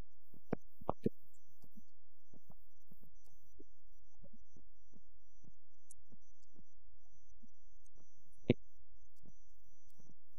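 A steady low hum with scattered faint clicks; a few clicks come about half a second to a second in, and one sharper click comes about eight and a half seconds in.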